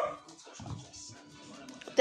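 A puppy's short yap cuts off right at the start. Then comes a low, quiet stretch with faint background music.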